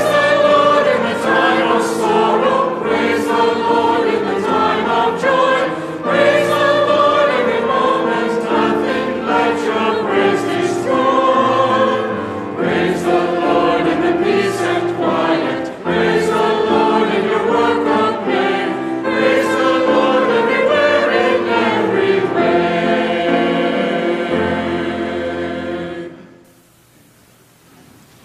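A church choir and congregation singing a hymn of praise with keyboard accompaniment, the last chord stopping near the end.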